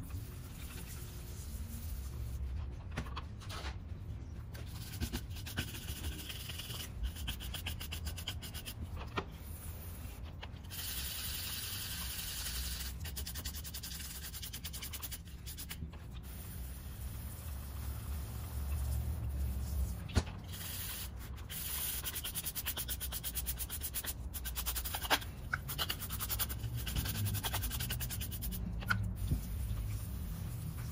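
Stiff plastic-bristle brush scrubbing a degreaser-wet aluminium piston from a Toyota 2ZR-FXE engine, a continuous rapid rubbing, with a few sharp knocks in the second half. It is cleaning the carbon deposits off the piston and out of its ring grooves.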